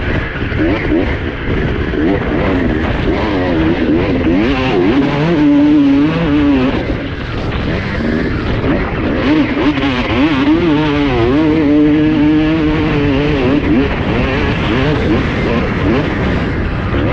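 Honda CR250R two-stroke single-cylinder motocross engine revving hard under load, its pitch rising and falling quickly as the throttle is worked over rutted sand.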